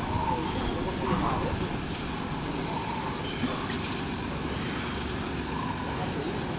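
Steady low outdoor background noise, with faint distant voices now and then.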